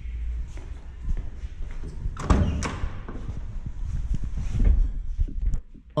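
Camera-handling rumble with footsteps and a run of knocks and thumps, the loudest about two seconds in, as a Volkswagen Gol's door is opened and someone climbs into the driver's seat.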